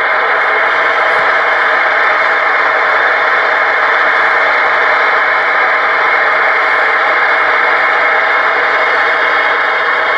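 Stryker SR-955HPC CB radio's speaker putting out steady, loud receiver static on channel 19 (27.185 MHz), an even hiss with a few faint steady tones in it.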